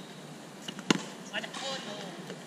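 A cricket bat striking the ball once, a single sharp crack about a second in, followed by a brief call from a player.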